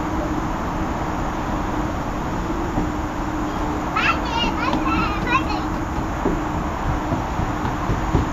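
Steady outdoor background hiss with a low, even hum, and a toddler's brief high-pitched squeals a few seconds in.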